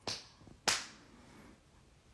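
Two sharp clicks about two thirds of a second apart, the second louder.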